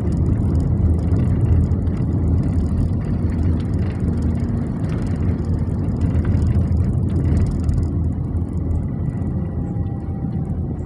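Steady low rumble of a car driving, heard from inside the cabin: engine and tyre noise on the road.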